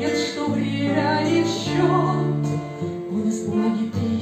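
A woman singing a song to her own strummed steel-string acoustic guitar.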